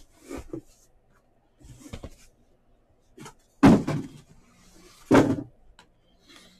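Cardboard hobby boxes of trading cards being handled and set down on a table: a few light bumps, then two loud thumps about a second and a half apart.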